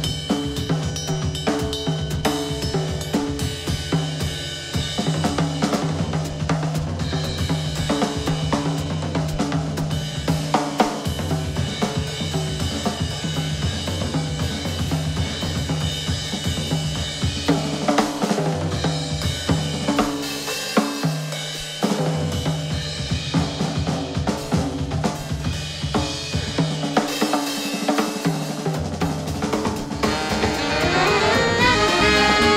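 Live big-band jazz with the drum kit to the fore: snare, bass drum, hi-hat and cymbals playing busily over low held bass notes.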